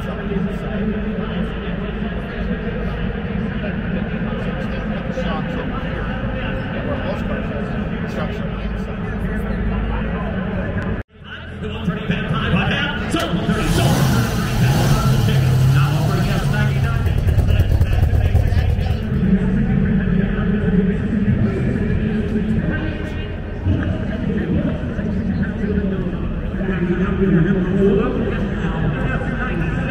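Crowd babble in a large hall. After a brief cut, a 1967 Shelby GT350's V8 engine runs as the car moves among the crowd, loudest in the few seconds after the cut.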